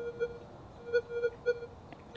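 Minelab Manticore metal detector's audio: a faint steady tone that swells into about five short beeps as the 5x8-inch coil sweeps over a small gold nugget. The beeps are the detector's audio response to the nugget, given without a target ID.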